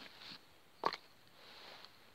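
A single short, sharp knock about a second in, amid faint rustling.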